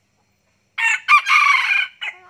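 F2-generation red junglefowl rooster crowing once, starting just under a second in. A short opening note and a brief break lead into a longer note that cuts off abruptly, the clipped ending typical of a junglefowl crow.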